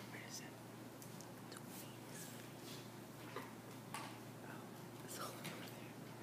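Faint whispering and hushed talk, too quiet to make out, over a steady low room hum.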